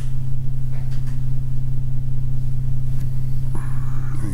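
Loud steady low electrical hum with one overtone, unchanging throughout: typical of mains hum picked up by the meeting-room sound system.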